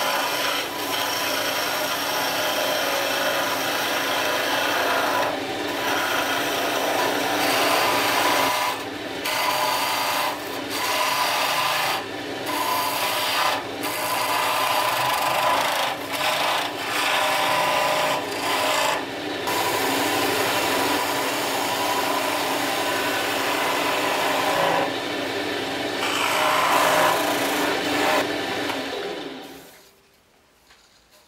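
Small benchtop wood lathe running with a steady motor hum while a flat chisel cuts the spinning wooden spindle: a continuous scraping cut broken now and then by short gaps where the tool comes off the wood. The hum and cutting die away in the last second.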